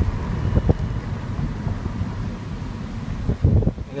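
Wind buffeting the microphone over the low rumble of a moving car, with two stronger gusts, one early and a louder one near the end.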